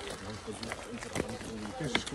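Men's voices talking quietly while walking, with footsteps on a dirt forest path about twice a second.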